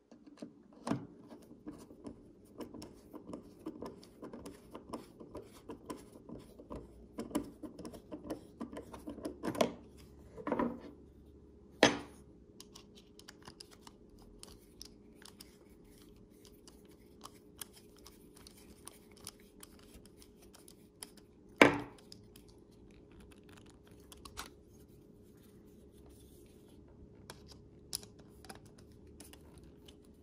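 A T10 Torx screwdriver turning small screws to fasten handle scales onto a fixed-blade knife: a run of light clicks and scratchy ticks of the bit and screws, busiest in the first twelve seconds, with a few sharper clicks of metal and scale being handled, one about two-thirds of the way through. The screws are square-edged and only go in one way, so the work takes some fiddling.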